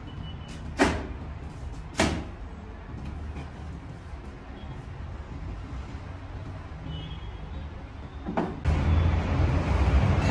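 Large kitchen knife chopping cabbage on a plastic cutting board: two sharp chops about a second apart, then quieter handling. Near the end a knock, followed by a louder low rumble.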